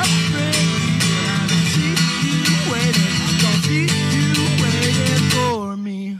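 Acoustic guitar strummed steadily, the closing bars of a song; the strumming stops near the end and a last chord rings out and fades.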